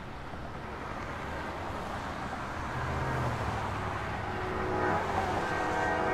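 Car driving along the road, its engine and tyre noise growing steadily louder as it approaches. Faint tones come in near the end.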